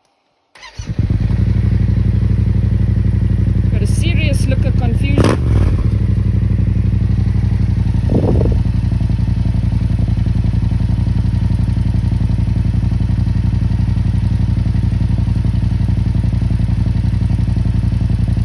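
Yamaha MT-07's parallel-twin engine starting about half a second in and then idling steadily.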